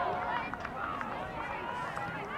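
Several voices shouting and calling over one another during a soccer game, from players, coaches and spectators around the field.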